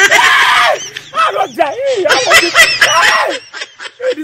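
A man's voice: a loud, rough shout, then a string of wordless wailing cries that rise and fall in pitch, the sound of him crying in distress.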